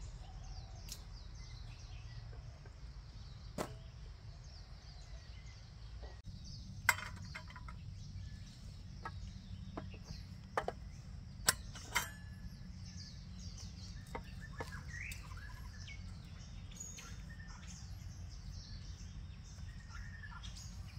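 Scattered sharp clinks and knocks of stainless-steel camping coffee gear being handled and set down, the loudest about seven and twelve seconds in, over a steady low background rumble and birds chirping.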